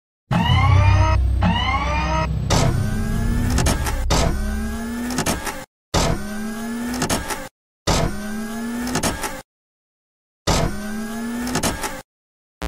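Motor-like whirring sound effects, with pitch sweeping upward again and again and a heavy low rumble under the first few seconds. The sound comes in four bursts, each cutting off abruptly.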